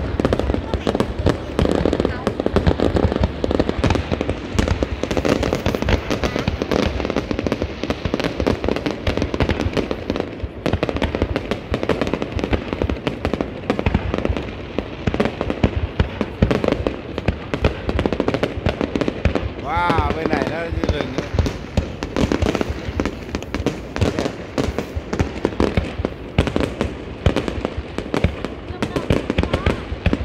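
Fireworks display: a continuous, rapid barrage of aerial shell bursts and crackling, with no break throughout.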